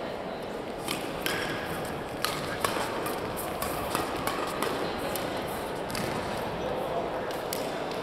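Badminton doubles rally: a quick run of sharp racket-on-shuttlecock hits that stops shortly before the end, over the murmur of voices in a large sports hall.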